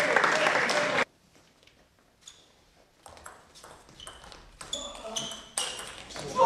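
Table tennis rally: the ball clicking off bats and table with short, bright pings, several hits a second, getting louder toward the end. Before it, the first second holds loud crowd noise and voices in the hall, which cut off suddenly into near silence.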